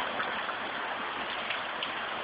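Heavy rain pouring down, a steady even hiss with a few faint ticks.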